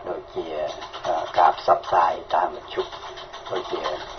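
Speech only: a person talking continuously, news-reading style.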